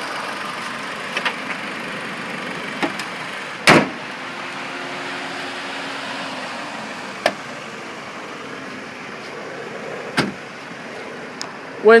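2004 Dodge Stratus SE's engine idling steadily, with a few sharp clicks and one louder thump a little under four seconds in.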